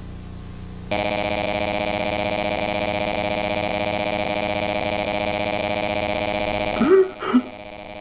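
A low steady hum, then about a second in a loud electronic drone of many tones held unchanged for about six seconds, cutting off near the end.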